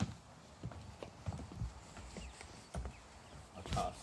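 Footsteps in work boots on an OSB-sheathed timber floor deck, a run of irregular knocks.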